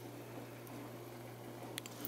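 Quiet room tone with a faint, steady low hum and a couple of small ticks near the end.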